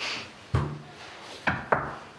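Two sharp knocks in quick succession, about a second and a half in, after a single spoken word.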